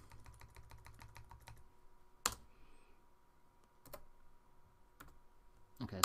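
Computer keyboard, faint: one key tapped rapidly and evenly, about ten times a second for about a second and a half, backspacing over a line of typed text, followed by a few single sharp clicks, the loudest a little past two seconds in.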